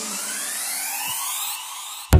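A synthesized rising sweep, several thin tones gliding steadily upward in pitch, as a song's last held note dies away about halfway through. It is a transition effect between two pieces of music.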